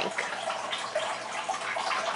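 Steady trickling and splashing of water in a turtle tank, from the aquarium filter's outflow.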